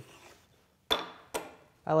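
Two short, light clinks about half a second apart, the first louder: a small metal tin of paste wax being picked up and handled on a wooden workbench.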